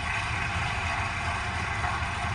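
Steady noise inside a stationary car's cabin: a low engine idle rumble under an even hiss, with no change in level.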